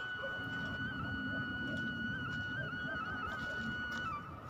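Background music: a flute holding one long high note, with a few small ornamental turns in pitch in the second half.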